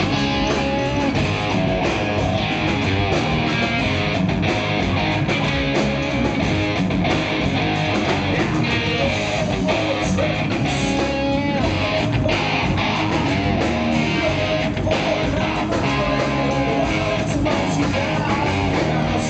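Live rock band playing at a steady, loud level: electric guitars over a drum kit.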